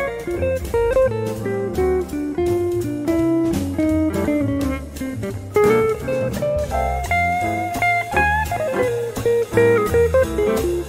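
Electric guitar playing a fast single-note jazz solo over a backing track with a bass line, outlining a B-flat minor arpeggio and then F blues lines over a ii–V in F.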